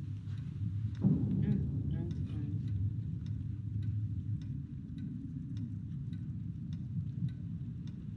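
A clock ticking about twice a second over a low, steady hum, with a faint muffled voice briefly in the first few seconds.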